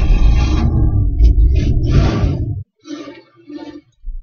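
Ford pickup's engine being started and struggling to catch, its loud rough running cutting off suddenly about two and a half seconds in. A few short, fainter sounds follow.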